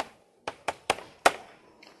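Chalk writing on a blackboard: a handful of short, sharp taps and strokes of the chalk against the board, spread over about a second.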